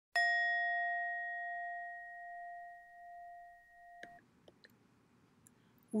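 A single strike on a bell, ringing with a clear tone that wavers slowly as it fades, cut off abruptly after about four seconds. Faint hiss with a few small clicks follows.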